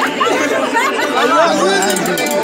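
Several people talking loudly over one another in lively group chatter.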